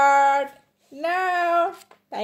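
A child's voice holding two drawn-out, wordless notes, the first ending about half a second in and the second rising slightly and ending shortly before the end.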